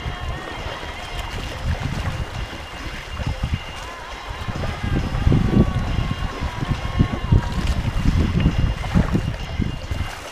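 Wind buffeting a camera microphone on a wooden sailing canoe at sea, with water splashing along the hull. It gets gustier from about five seconds in.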